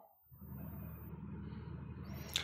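Faint steady low hum of background room noise, coming in a moment after the speech stops.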